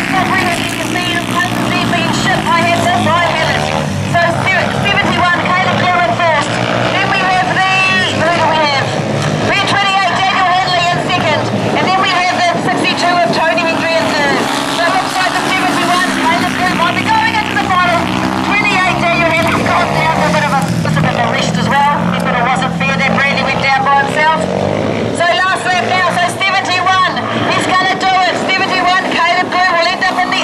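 Speedway solo motorcycles racing around a dirt oval, their engines rising and falling in pitch again and again as the riders open and shut the throttle through the bends and down the straights.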